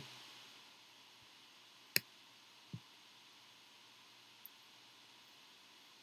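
A single sharp click about two seconds in, then a softer, duller knock under a second later, over faint room tone.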